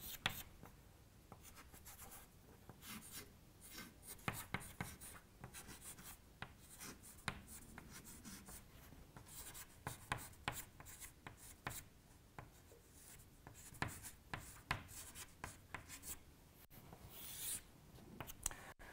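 Chalk writing on a chalkboard: a faint, irregular run of short taps and scratching strokes as the words are written out.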